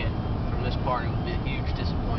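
Steady road and engine rumble heard from inside a moving vehicle's cabin at highway speed, with a short bit of voice about a second in.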